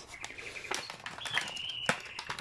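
Plastic and paper packaging of a diamond painting toolkit rustling and clicking as it is handled and opened. A thin high whistle-like tone sounds twice, the second longer and slightly falling.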